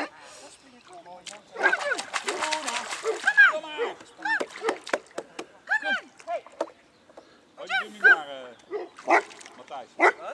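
Newfoundland dog making short, high, rising-and-falling whines and yelps, again and again, while being urged to jump from an inflatable boat. A brief rough noise sounds about two seconds in.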